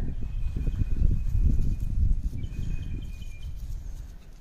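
Wind buffeting the microphone: an uneven low rumble that eases off near the end. A faint, thin, steady high note sounds in the background for a few seconds.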